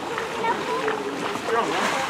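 Indistinct chatter of several people's voices talking at once, with a brief rustling rush near the end.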